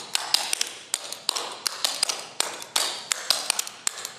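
Clogging shoe taps striking a wooden floor in a quick, uneven rhythm of several sharp clicks a second: four clogging basics, each a double step and a rock step.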